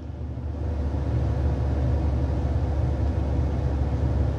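Steady low rumble of a running car heard from inside the cabin. It grows louder over the first second, then holds even.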